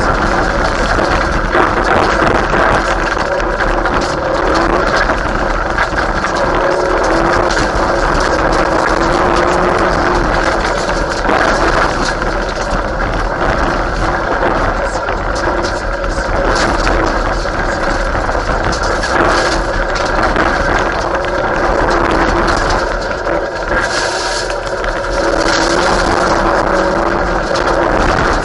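Mitsubishi Lancer Evolution VII Group A rally car's turbocharged four-cylinder engine driven hard on a gravel stage, heard from inside the car, its note rising and falling as it accelerates, shifts and brakes, over a constant rush of tyre and gravel noise with stones rattling against the car.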